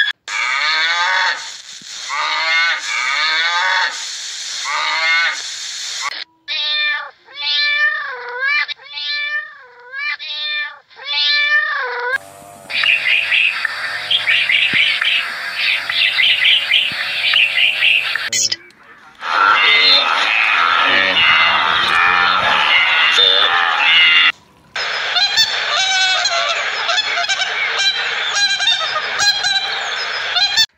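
A run of different birds' calls, spliced one after another, changing abruptly about every five to six seconds; each stretch is a series of repeated pitched calls that rise and fall.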